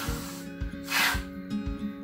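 Aerosol can of hair mousse hissing briefly about a second in as foam is dispensed into a hand, over acoustic folk background music.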